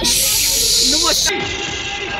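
A loud hiss lasting a little over a second, then cut off abruptly, with faint voices after it.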